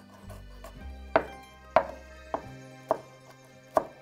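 Chef's knife dicing Roma tomatoes on a wooden cutting board: five sharp knocks of the blade on the board, spaced roughly half a second to a second apart, over soft background music.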